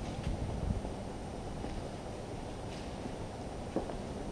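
A few faint footsteps on steel floor plates, roughly a second apart, over a steady low rumble.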